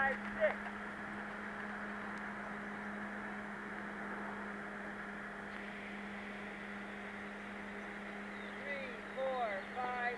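A steady low hum with an even hiss, and brief bits of a person's voice right at the start and again near the end.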